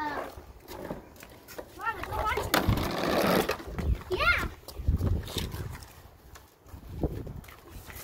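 A small child's high-pitched wordless vocalizing: several short babbling and squealing sounds that rise and fall, with a brief burst of rustling noise about three seconds in.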